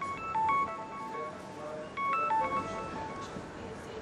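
Mobile phone ringing for an incoming call: a melodic ringtone of quick, short high notes whose phrase repeats about every two seconds.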